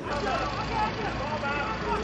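Several voices of players and onlookers calling out at once across a football pitch, heard from a distance over a steady low rumble.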